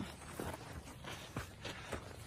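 Footsteps on a sandy dirt track through dry brush, a few soft, irregular crunches.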